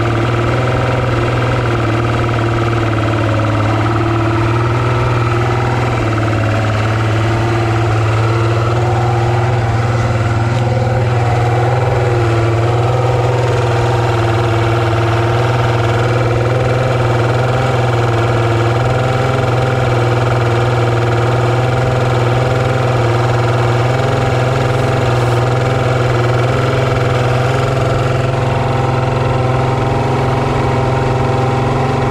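Mercury Optimax V6 two-stroke outboard idling steadily on the test stand.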